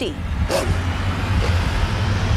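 Film-trailer sound effects: a low rumble under a hissing rush, with a brief voice sound about half a second in.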